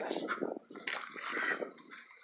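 Indistinct talking: a person's voice in short broken stretches, with no clear words.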